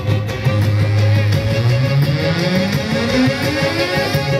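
Live, amplified Black Sea folk music for a horon dance, with a quick steady beat. A held low note slides steadily upward over the second half.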